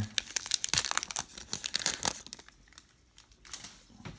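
Foil wrapper of a trading-card pack (2018 Upper Deck Goodwin Champions) being torn open and crinkled by hand. A dense run of crackling lasts about two seconds, then thins to a few faint crinkles.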